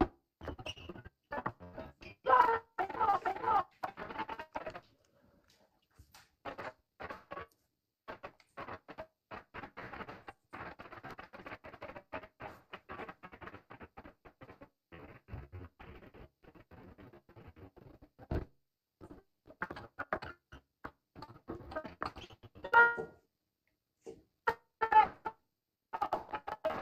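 Broken-up broadcast audio from a corrupted feed: short, stuttering, chopped fragments that cut out suddenly to silence several times, with a few louder bursts near 2–3 s and near 23 s.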